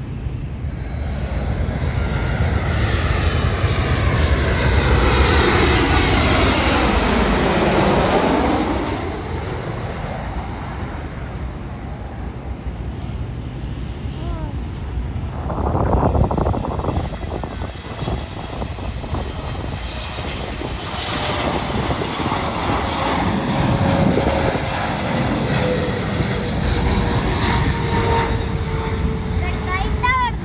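Jet airliners landing, passing low overhead. The engine whine sweeps down in pitch as the first passes, loudest about five to nine seconds in, and more jet engine noise follows with a slowly falling tone near the end.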